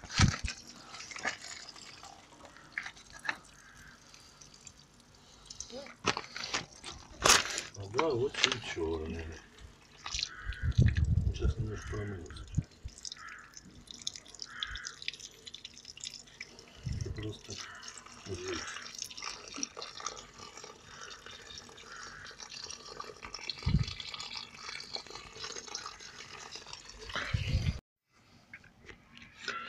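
Thin stream of water trickling and dripping from an outdoor tap onto a hand and the ground, with scattered knocks.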